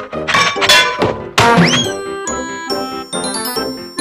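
Cartoon soundtrack music with sound effects: a quick rattling run of strokes, then a loud hit with a short whistle-like pitch glide, giving way to light chiming, bell-like music.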